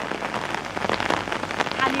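Heavy rain falling steadily, a dense patter of individual drops. A woman's voice begins near the end.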